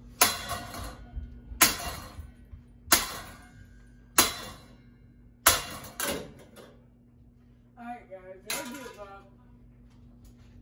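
A hanging ceiling fan struck hard again and again with a long rod: about six sharp clanks roughly every second and a quarter, each with a short clattering ring, then one more hit near the end.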